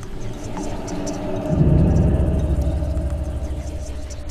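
A deep, pulsing rumble swells up suddenly about one and a half seconds in, then slowly fades, with faint crackles above it.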